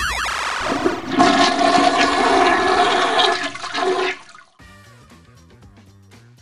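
A toilet flushing: rushing water for about three seconds over a music sting, cutting off a little after four seconds in. Faint, quiet music follows.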